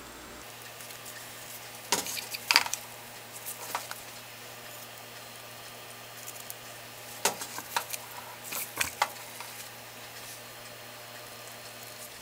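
Scattered small clicks and short liquid squirts from a plastic syringe pushing dye into wet wool roving in a pot of hot water. The sounds come in two clusters, one a couple of seconds in and one past the middle, over a faint steady low hum.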